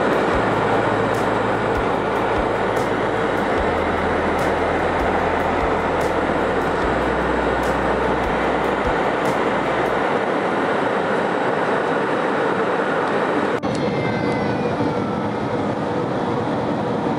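Steady jet airliner cabin noise at a window seat beside the engine: an even rushing roar of jet engines and airflow at altitude. About two and a half seconds before the end the sound changes abruptly to a similar roar with faint gliding whines.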